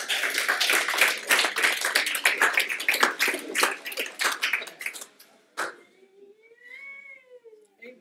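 Audience applauding for about five seconds, then one high, drawn-out call that rises and falls in pitch.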